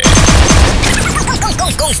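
Electronic sound effects in a sonidero sound system's produced intro: a crash at the start, then a rapid run of short zaps that each rise and fall in pitch, about six a second, over music.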